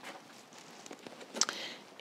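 Faint handling of a pen and a plastic plant label: light scattered clicks and rustles, with one sharper click and a short hiss about one and a half seconds in.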